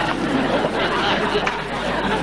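Studio audience chattering and murmuring, a steady mix of many voices with no single speaker standing out.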